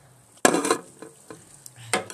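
Aluminium drink can handled close to the phone's microphone: a sudden scraping crackle about half a second in, a few light clicks, then more sharp knocks and scrapes near the end as the can is set down.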